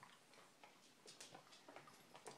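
Near silence with faint, irregular clicks: a dog's claws ticking on a hardwood floor as it walks on a leash.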